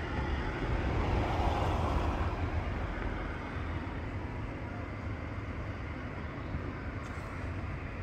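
Steady distant engine rumble outdoors, swelling for a second or so near the start and then settling.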